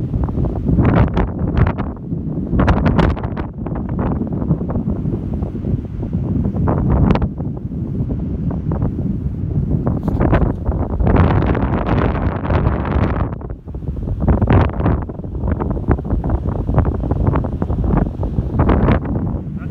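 Strong, gusty wind buffeting the microphone, surging and easing in loud rushes.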